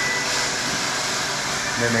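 Steady mechanical hiss of shop background noise, with no single event standing out; speech resumes right at the end.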